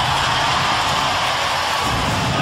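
Studio audience cheering and applauding, a steady wash of crowd noise.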